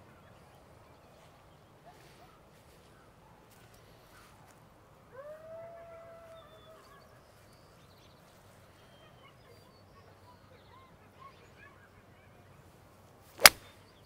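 A nine-iron striking a golf ball once near the end, a single sharp click. Earlier a bird gives one drawn-out call about five seconds in, with a few fainter calls over the quiet background.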